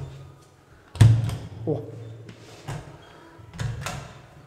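A handleless push-to-open service panel in a wall pops open when pressed by hand: a sharp click-thump about a second in, with a short low ring, and a smaller knock near the end as the panel moves.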